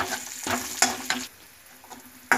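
Curry leaves and mustard sizzling in hot oil in a metal kadhai, with a spatula scraping and stirring them a few times in the first second or so before the sizzle goes quieter.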